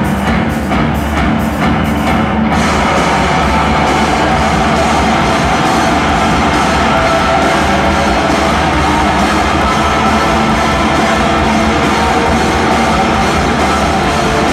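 A noise-rock band playing live through a hall PA, with loud distorted electric guitars and drums. A regular pulsing rhythm gives way about two and a half seconds in to a dense, sustained wall of guitar noise.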